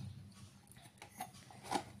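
Faint handling noise: a few light clicks as an amplifier driver circuit board is moved by hand.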